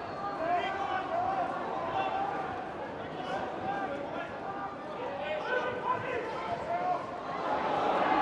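Footballers shouting and calling to each other on the pitch, short overlapping cries over the steady murmur of a small crowd.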